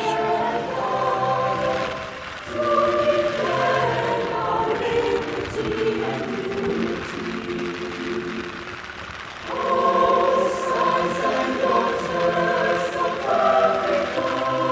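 Several voices singing a slow melody in long held notes, phrase after phrase, with a short break about two seconds in and a longer lull around eight to nine seconds in.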